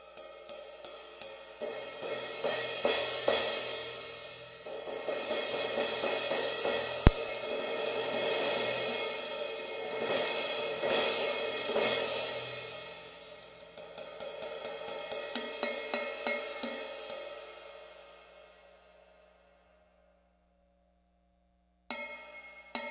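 Zildjian 16" K Constantinople crash cymbal played with drumsticks: quick light taps swell into a full, washy crash with repeated accents. It then rings out and fades to silence about three-quarters of the way through, and fresh strikes come in at the very end.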